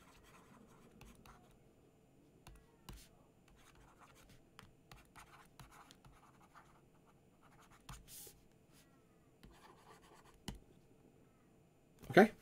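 Faint, irregular tapping and scratching of a stylus writing by hand on a tablet screen.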